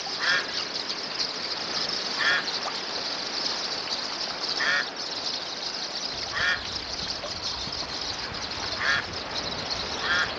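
An animal giving five short calls, roughly every two seconds, over a steady high-pitched hiss.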